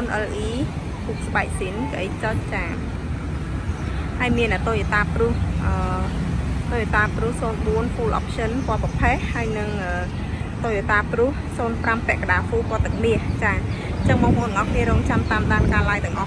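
A person talking continuously over a steady low rumble of outdoor street traffic.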